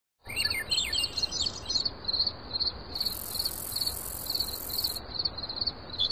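Birds and insects chirping, as in a nature-ambience recording: quick gliding bird calls in the first couple of seconds over a regular run of short high chirps, about two a second. A steady high buzz joins from about three to five seconds in.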